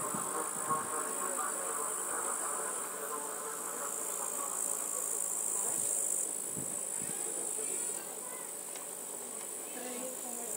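Insects chirring in summer grass: a steady high-pitched buzz that thins out in the last few seconds.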